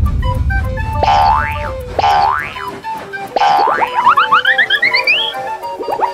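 Cartoon background music with comic sound effects: three rising boing glides about a second apart, then a fast run of short rising chirps that climb higher and higher.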